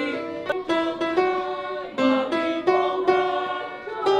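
Instrumental music: a melody of separate notes, each struck or plucked sharply and left to ring, about two or three notes a second.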